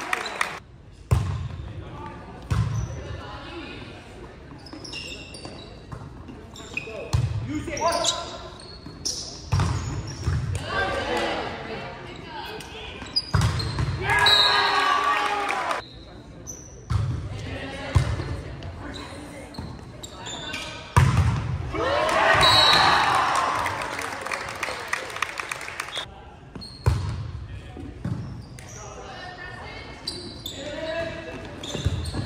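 Volleyball rallies: about a dozen sharp thuds of the ball being hit and striking the hardwood floor, among players' shouts and voices, echoing in a large gymnasium.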